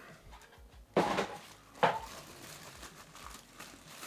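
Cardboard box and plastic bag being handled while unpacking: two sharp scuffs about one and two seconds in, then softer crinkling of the plastic wrap.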